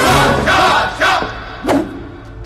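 Voices shouting, loud at first with a few separate shouts, then dying away over the second half.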